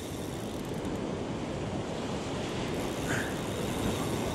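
Ocean surf washing and breaking over breakwater rocks, a steady noise with wind buffeting the microphone.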